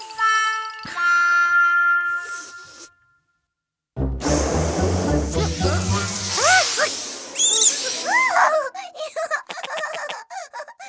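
Cartoon soundtrack: a chime of ringing bell-like notes that fades out, a second of silence, then a busy run of cartoon sound effects with short rising-and-falling whistles.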